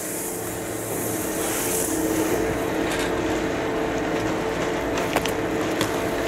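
A steady mechanical hum holding a couple of low tones under an even outdoor hiss, with a few faint clicks near the end.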